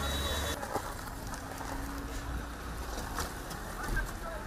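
Roadside street ambience: a vehicle engine running, fading out about half a second in, then a steady noisy background with a few sharp knocks near the end.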